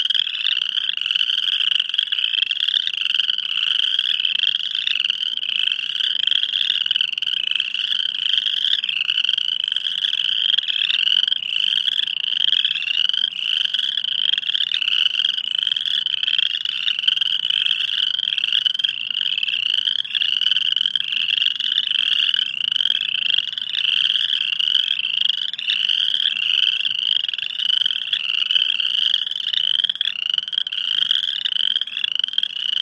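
A dense frog chorus: many frogs calling at once in short, high, overlapping calls that repeat without a break. A second, lower-pitched band of calls runs beneath them.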